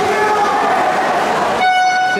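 Echoing pool-hall din of voices and splashing, then near the end a loud, steady electronic game horn sounds suddenly.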